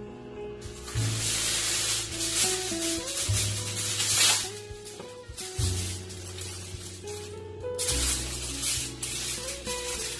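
Background music with a steady bass line, over several bursts of aluminium foil crinkling and rustling as hands open the foil wrapping.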